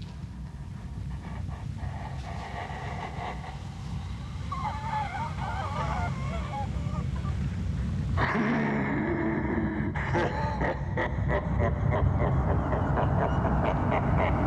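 Deep, rumbling film score that swells steadily louder. About eight seconds in, a deep demonic male voice breaks into a long, repeated laugh over it.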